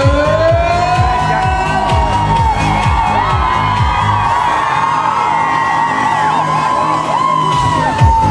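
Live Schlager dance-pop played loud through a concert PA, on a steady kick-drum beat of about two a second, with a crowd cheering and whooping over it.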